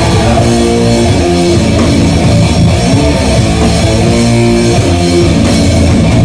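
Live sludge metal band playing loud: distorted electric guitar riff with bass and drum kit, the chords changing about every half second, recorded on a phone's microphone.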